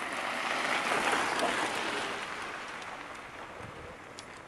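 Bicycle tyres rolling over a snowy trail as two riders pass close by: a rushing, crunching noise that swells over the first second and then slowly fades.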